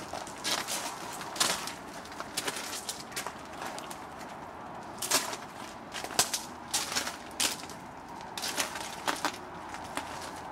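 Irregular crunches and sharp clicks, about one or two a second, of footsteps on loose wood chips.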